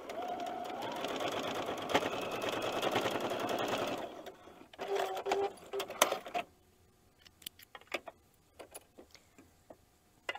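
Domestic electric sewing machine stitching a straight seam steadily for about four seconds, then two short bursts of stitching. After that, a few light clicks.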